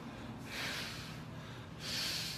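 A man breathing hard while holding flexing poses: forceful, rushing breaths through the nose or mouth, one about every second and a half.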